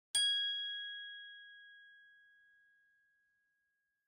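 A single bell-like ding, struck once just after the start, its clear ringing tone fading away over about three seconds: the chime that goes with an intro logo.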